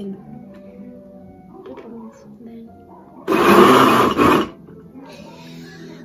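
Small countertop electric blender motor switched on for just over a second, whirring through papaya chunks and water, then stopping abruptly.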